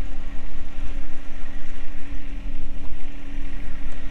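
Kubota diesel engine of a Bobcat E35i mini excavator idling steadily, heard through its open engine compartment, with a deep even rumble.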